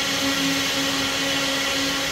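A machine running steadily: a continuous motor hum with a low steady tone and an even noise over it.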